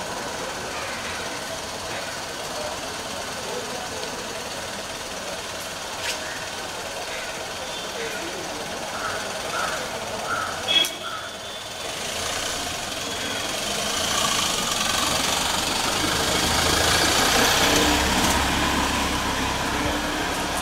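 Engine of a Suzuki van ambulance running as it moves slowly forward, growing louder in the second half as it comes close, amid people's voices. A single sharp knock about eleven seconds in.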